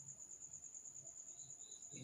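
A cricket trilling faintly and steadily in the background: one high, even, pulsing note that does not change.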